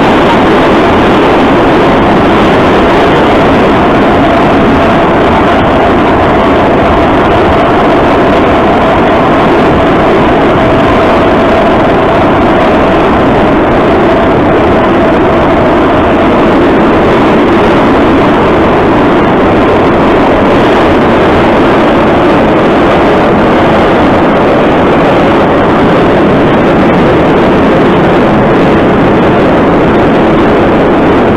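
Moscow Metro train running at speed through a tunnel, heard from inside the car: a loud, steady noise of wheels on rails, with a faint whine showing through for a while in the middle.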